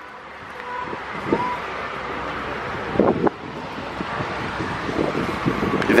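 A steady rushing noise that builds slowly over several seconds, with brief faint voices in the background.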